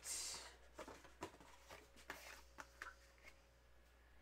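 Faint paper handling: a short sliding rustle at the start, then scattered soft taps and rustles as cardstock pieces are moved and laid down on a craft mat.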